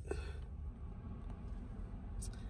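Car air conditioning running: a low, steady hum with a faint rush of air from the vents, heard as 'a little bit of wind'.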